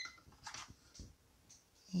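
A kitchen timer's beeping cuts off right at the start, followed by a few faint taps and clicks as the small cube-shaped flip timer is turned over to switch it off and set down on the counter.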